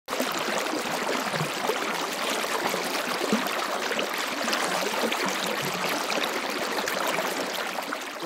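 Flush water rushing steadily along a dairy barn's manure alley and around the cows' hooves, washing the manure away.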